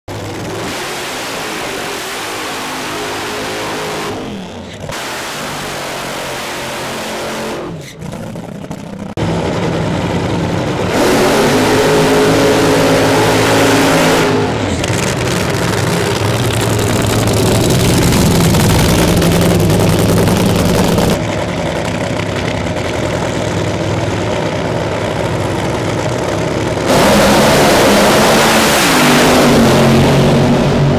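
Nitro Funny Car's supercharged V8 fuel engine running and revving at high power, in a string of clips that cut abruptly one to the next. The pitch rises a couple of times, and the sound gets louder after about ten seconds.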